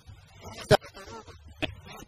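A man's voice close to a handheld microphone in an outdoor crowd, broken by a sharp, loud pop about three quarters of a second in and a smaller one shortly before the end.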